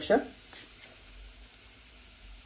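Chopped garlic frying in hot oil in a small saucepan: a faint, steady sizzle.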